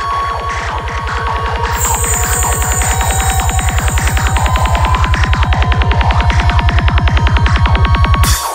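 Electronic music build-up: a rapid, evenly repeating low bass pulse that grows steadily louder, with a high hiss sweep coming in about two seconds in over a few held synth tones.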